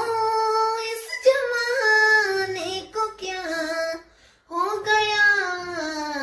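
A woman singing a Hindi song, holding long drawn-out notes that slide slowly down in pitch, with a short break about four seconds in.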